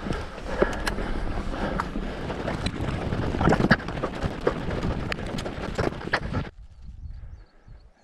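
Orbea Rallon enduro mountain bike rolling over a stone-flagged trail: a steady rattle from tyres and frame with frequent sharp knocks as it hits the slabs, and wind on the microphone. About six and a half seconds in it cuts off suddenly to a much quieter stretch.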